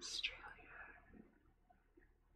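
Faint whispering from a woman's voice at the start, trailing off to near silence after about a second.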